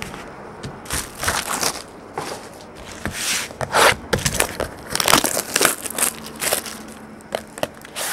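Clear plastic shrink-wrap being pulled off a trading-card pack box and crumpled by hand, in irregular bursts of crinkling.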